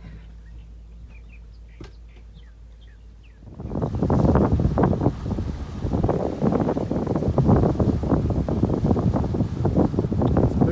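Wind buffeting the microphone of a camera on a moving boat, loud and gusty, starting suddenly about three and a half seconds in. Before that there is only a low steady hum and a few faint chirps.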